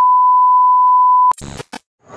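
Steady single-pitch test-tone beep from a TV colour-bars transition effect. It cuts off about 1.3 seconds in, followed by a brief crackle of static and a moment of silence.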